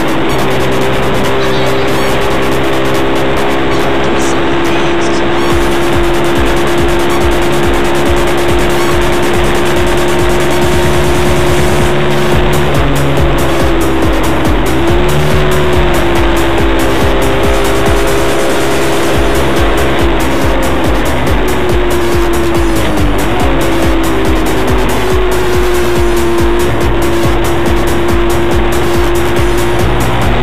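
Moped engine running at a steady cruising speed, its whine holding one pitch and dipping briefly twice, about halfway through and again some seconds later, as the throttle eases.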